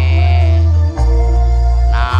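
Loud music played through a large outdoor sound system of stacked loudspeakers, dominated by heavy sustained bass notes, with a keyboard-like melody above. The bass note changes about halfway through.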